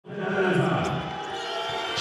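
A basketball being dribbled on a hardwood court, a few bounces about half a second apart, under the voices and murmur of an arena crowd.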